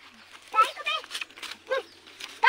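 Short bursts of a high-pitched voice talking, with brief pauses between.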